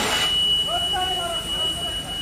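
A fire alarm sounding one continuous high-pitched tone over a steady rushing noise, with men's voices talking around the middle.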